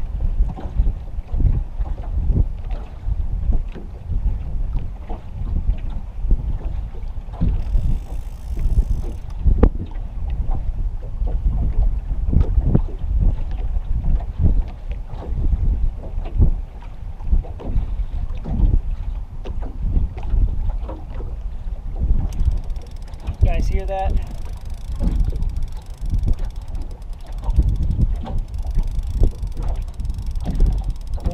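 Wind buffeting the microphone in irregular gusts, with water slapping against the hull of an anchored boat.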